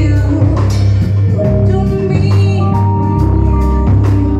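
A live band playing: drum kit hits over a heavy electric bass line and keyboard, with a woman singing into the microphone.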